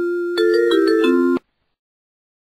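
Short electronic chime jingle of bell-like notes, rising into a brief chord flourish that cuts off suddenly about one and a half seconds in: the program's reward sound for a correct match.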